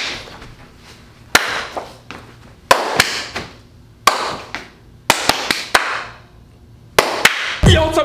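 Sharp hand claps and slaps, about ten of them in irregular bunches, each ringing out briefly in the room.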